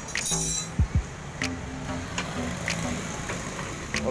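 Background music playing, with a few short light clicks and clinks from hands working on the motorcycle frame.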